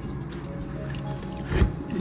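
Quiet background music, with the soft wet squish of a table knife pushed down the inside of a can of beef loaf to loosen the meat from the wall, strongest about one and a half seconds in.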